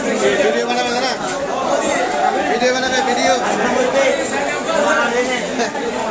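Background chatter of many people talking at once, steady and unbroken.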